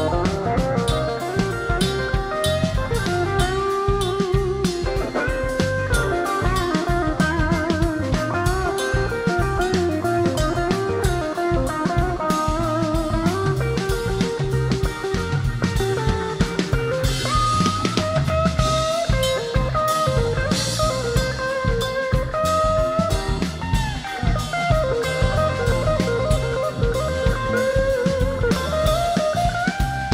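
Live blues band playing an instrumental passage: a lead electric guitar line with bent and vibrato notes over steady drums, bass and keyboard.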